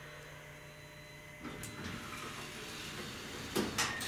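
Elevator cab's sliding doors and door operator moving. A steady hum cuts off about a third of the way in, and a few sharp clicks come near the end.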